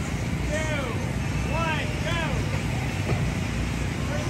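Children shouting and squealing in short rising-and-falling cries, over the steady low hum of the inflatable's electric air blower.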